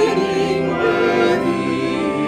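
A vocal quartet singing a slow hymn in parts, accompanied by a church organ, with held chords and vibrato in the voices.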